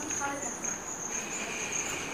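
An insect's high-pitched, steady trill.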